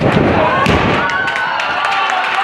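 Wrestler's body slamming onto the wrestling ring's mat, a heavy booming thud as it begins and a second one just under a second in, over a crowd shouting.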